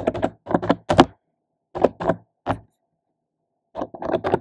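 Typing on a computer keyboard: quick clusters of key presses with short pauses between them, the loudest about a second in.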